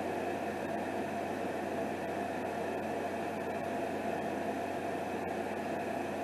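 Steady room noise: an even hiss with a low hum, unchanging throughout, with no distinct handling sounds standing out.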